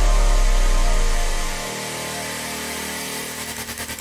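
Trance track in a DJ mix at a breakdown: a held deep bass note fades out about halfway through, leaving a quieter synth pad, and a fast pulsing build starts near the end.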